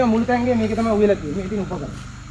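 Speech only: a man talking, stopping shortly before the end.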